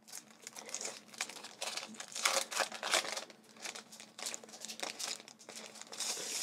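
Packaged clear-sticker sheets crinkling and rustling as they are handled and turned over, in quick irregular rustles.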